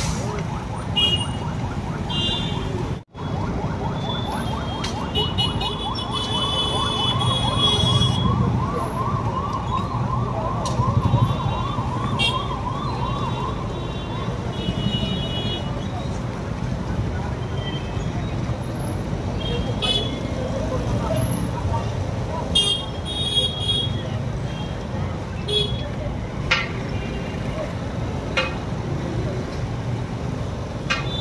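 Police vehicle siren sounding in quick rising-and-falling sweeps, about two or three a second, from about five seconds in until about fourteen seconds in, over steady street noise of traffic and voices.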